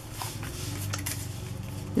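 Soft rustling and a few light taps of cardstock and paper ephemera being handled and set down, over a steady low hum.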